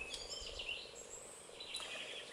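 Faint birdsong: a few short chirps and whistled phrases over low outdoor background noise.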